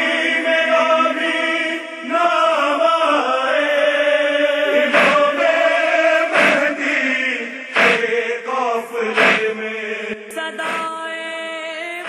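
Devotional vocal chant sung in long held notes, with a few sharp accents scattered through it.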